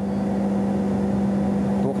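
Steady, even hum of running machinery with a strong low tone, unbroken and unchanging.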